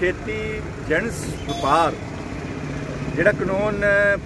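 A man speaking, in short phrases, over a steady low rumble.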